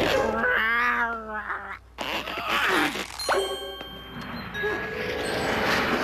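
Cartoon sound effects: a cat yowling with a wavering pitch for about a second and a half, then a sudden set of steady ringing tones a little after the midpoint and a noisy swell that builds toward the end, over music.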